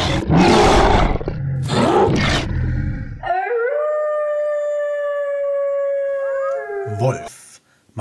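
Loud, rough growling for about three seconds, then one long wolf howl that rises at the start and holds its pitch for about three seconds before breaking off.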